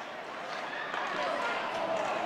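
Ice hockey rink game sound: a steady hiss of skates on ice and arena crowd, with faint distant voices calling out.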